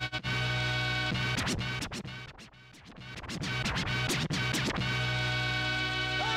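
DJ scratching on a controller's jog wheel over a playing track: fast back-and-forth scratches cut in about a second in, the music drops back briefly in the middle, then the steady track returns near the end.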